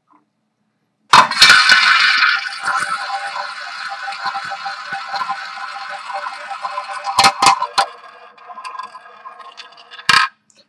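A small tabletop roulette wheel is spun by hand about a second in. Its ball runs around the bowl in a steady rattling whir that slowly fades. Two sharp clacks come about seven seconds in, then lighter ticking as the ball slows and settles.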